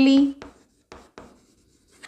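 White chalk writing a word on a chalkboard: a handful of short, separate strokes and taps, after a held spoken word ends in the first half second.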